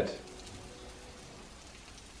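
Faint steady hiss of a hot cast iron frying pan still sizzling as a cheese omelette is slid out of it onto a plate.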